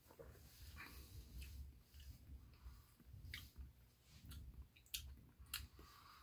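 Faint mouth sounds of someone tasting a sip of beer: wet lip smacks and tongue clicks, scattered through, with a few sharper ones in the second half, over a low rumble.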